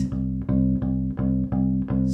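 Fretted bass ukulele playing one low note repeated in a straight, even beat, about two and a half notes a second, each note the same length.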